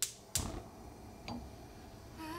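A sharp click, then a solid knock with a low thud about a third of a second in, and a lighter tap about a second later.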